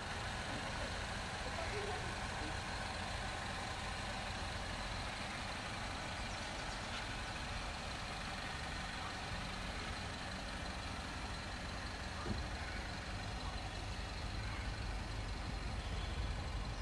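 Steady background rumble and hiss with no distinct events, heaviest in the deep low end; a single faint knock about twelve seconds in.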